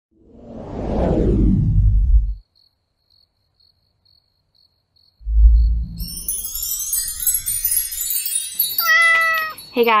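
Sound effects of an animated channel intro: a whoosh that swells and fades over the first two seconds, a pause, then a low boom followed by a high glittering shimmer, and a short cat meow about nine seconds in.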